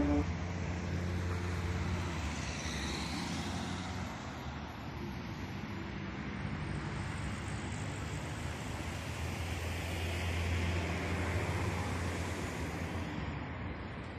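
Road traffic on an urban roundabout: cars driving past in a steady hum of engines and tyres, one passing closer and louder about ten seconds in.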